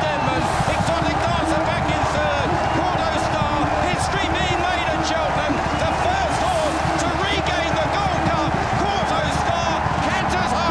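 Large racecourse crowd cheering and shouting as the horses run to the finish, many voices rising and falling together, with a few sharp knocks in it.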